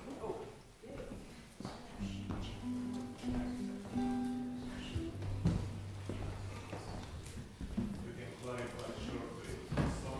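A few held instrument notes at different pitches, about a second each, over a steady low tone, sounded while musicians get set up between songs. Around them are quiet voices and knocks of equipment being handled.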